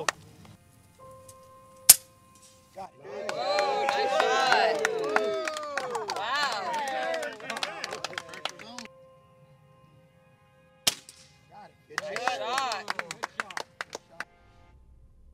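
Two sharp cracks of air rifle shots, about nine seconds apart, the first the loudest sound here.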